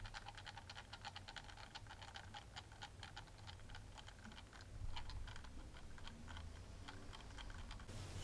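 Small motorized display turntable rotating: faint, quick, irregular ticking from its gear drive over a low hum.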